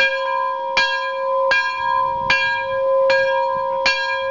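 A large temple bell struck over and over, about one stroke every three-quarters of a second, its ring hanging on between strokes.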